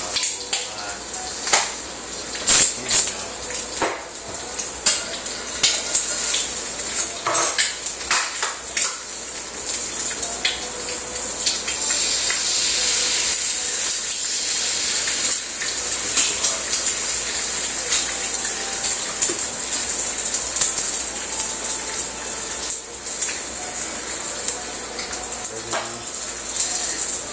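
Eggs frying in a nonstick skillet, with clicks and knocks in the first half as a second egg is cracked and added. From about halfway through, a steady sizzling hiss grows louder.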